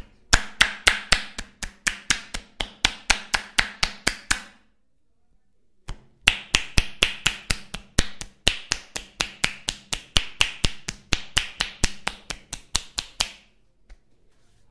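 Percussive massage strokes: palms clasped together and struck rapidly on a bare back, giving sharp claps at about five or six a second. They come in two long runs with a pause of over a second in the middle.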